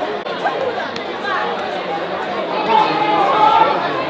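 Chatter of many voices at once, overlapping and indistinct, with no single speaker clear.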